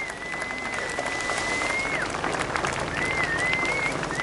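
Crowd applauding, a dense patter of scattered claps, with a thin high steady tone held for about two seconds and then returning in shorter wavering stretches near the end.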